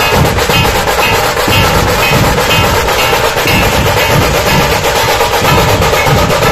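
A Puneri dhol-tasha troupe playing: many dhol drums beating heavy low strokes under the fast, continuous rattle of tasha drums, loud and without a break.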